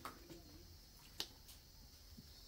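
Near silence: faint outdoor room tone with a couple of faint clicks, the clearest about a second in.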